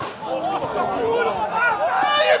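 Several voices shouting and calling over one another on a football pitch, starting abruptly and growing louder.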